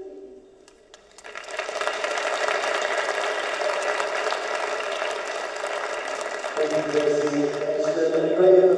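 Audience applauding, the clapping starting about a second in and holding steady for several seconds. A man's voice comes in over it near the end.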